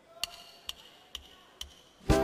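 Percussion count-in of four sharp wooden clicks, evenly spaced about half a second apart at tango tempo, leading into the tango music.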